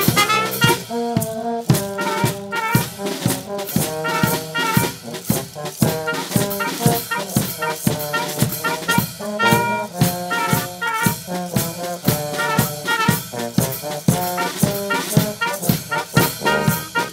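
Brass band playing a tune: trumpets, horns and tubas carry the melody and bass over a steady beat from a bass drum and snare drum.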